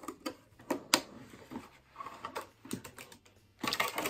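Light, irregular clicks and taps of small plastic pieces being handled: fingerboards and a clear plastic packaging tray. A louder scuffing noise comes near the end.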